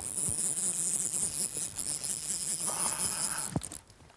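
Fly reel's click drag buzzing as a hooked fish pulls line off: a high-pitched steady whirr that starts suddenly and cuts off near the end.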